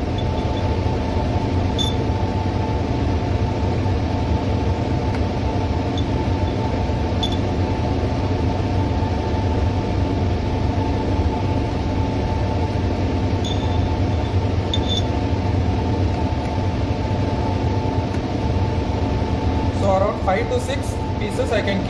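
Laminar airflow cabinet's blower running with a steady, loud hum, with a few faint clinks of steel forceps against a glass culture jar.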